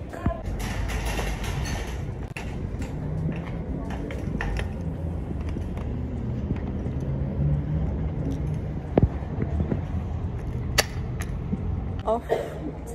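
Shopping trolley pushed over paving: a steady rolling rumble and rattle of its wire basket and castors, with a few sharp metallic clicks near the end.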